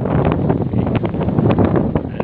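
Wind buffeting the microphone of a handheld camera: a loud, rough, rumbling noise.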